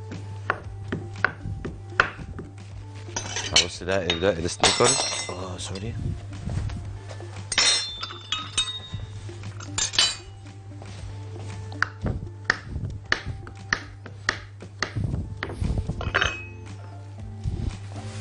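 Irregular clinks and taps of cutlery and small dishes being handled on a kitchen counter, over background music and a steady low hum.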